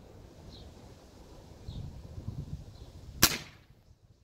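Gamo Mach 1 break-barrel air rifle firing a single shot: one sharp crack a little over three seconds in.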